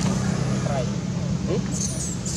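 Baby long-tailed macaque giving a few short, squeaky sliding calls, turning to high squeals near the end, over a steady low hum.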